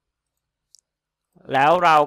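Near silence broken by a single faint mouse click a little before the middle; a man begins speaking near the end.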